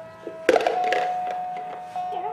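Baby's electronic musical toy playing a simple beeping melody, one plain note at a time, with a knock about half a second in.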